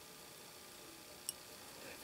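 Near silence: faint room tone, with one short, faint click a little over a second in.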